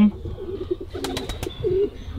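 Domestic pigeons cooing: low coos repeating from about half a second in, with a few sharp clicks about a second in.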